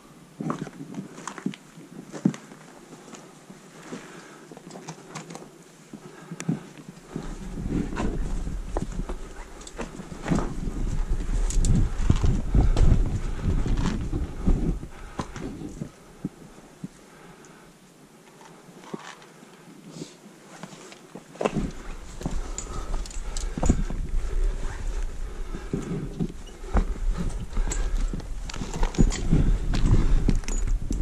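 Boots scrambling over loose limestone rock and scree, with stones scraping and clattering and small metallic clinks of climbing gear in many short, sharp knocks. A low rumble from wind or handling on the helmet-mounted action camera's microphone comes and goes, running through the middle and the last third.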